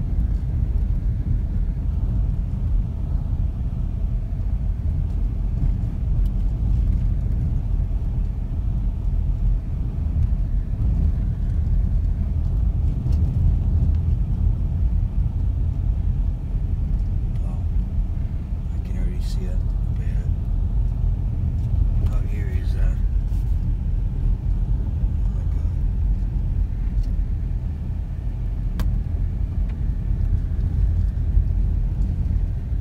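Steady low rumble of a car driving along a paved road, heard from inside the cabin.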